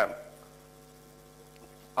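Steady electrical mains hum, several fixed tones held at an even level, audible in a pause between spoken words.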